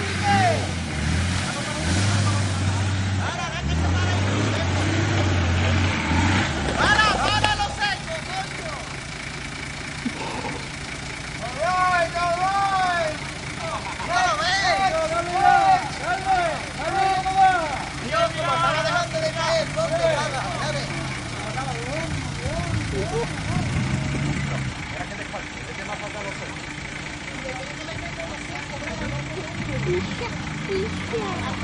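4x4 SUV engine running low and steady as the vehicle crawls through mud. People's voices call out over it through the middle stretch.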